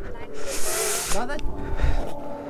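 Several people's voices, with a brief hiss lasting under a second about half a second in.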